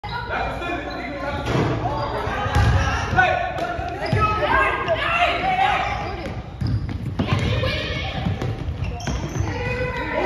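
Basketballs bouncing on a hardwood gym floor amid young players' voices calling out, echoing in a large gymnasium.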